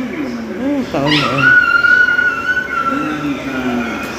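People talking, with a high, steady whine that sweeps up sharply about a second in and then holds one pitch for nearly three seconds.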